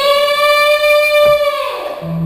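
A single long held musical note, steady in pitch with a ringing overtone series, fading out near the end.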